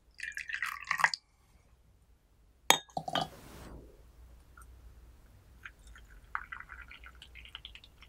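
Tea poured from a glass fairness pitcher into a cup, a short splashy trickle with light glass clinks. About three seconds in comes a sharp clink and a brief hiss, and near the end hot water starts trickling into a small Yixing clay teapot.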